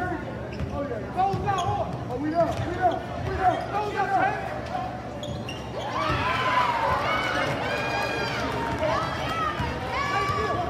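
Basketball game sounds on a hardwood gym floor: sneakers squeaking, a basketball bouncing, and voices calling out. The squeaks come thickest about six to eight seconds in.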